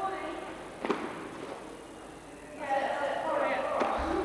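A person's voice without clear words, loudest in a long stretch from about two and a half seconds in, with a sharp click about a second in and another just before the end, in a large echoing hall.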